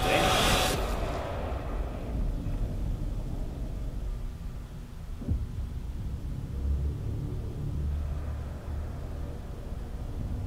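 Film trailer sound design: a loud hit dies away over the first second, leaving a deep, steady low rumble, with a single soft thud about five seconds in.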